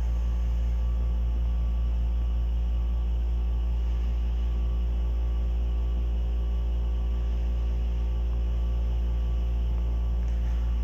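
Thermotron S-16-8200 environmental test chamber running in manual mode while heating near its 191 °C set point: a steady, unbroken low hum and drone from its machinery.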